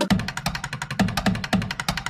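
Background electronic dance music during a drum build-up: fast, evenly spaced drum hits over a steady deeper beat.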